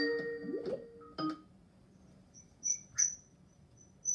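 Skype outgoing call ringtone: a melody of chiming, bell-like notes that stops about a second in. A couple of faint, short high chirps follow near the three-second mark.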